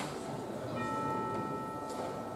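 A bell-like chime rings one sustained tone with several overtones, starting about three quarters of a second in and stopping just before the end, over a low murmur of voices.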